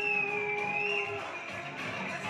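Music: a long held low note that ends just over a second in, with a higher melody line gliding gently above it.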